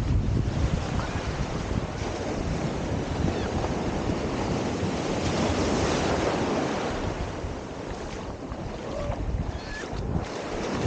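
Small ocean waves breaking and washing up the sand right around the microphone at the water's edge, the swash swelling loudest about halfway through and then draining back. Wind buffets the microphone throughout.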